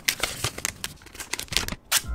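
Plastic protective film on a new smartphone being handled and peeled, a dense run of irregular crinkles and crackles with a sharper click near the end.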